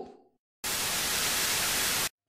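A burst of loud, even static hiss that starts about half a second in and cuts off suddenly.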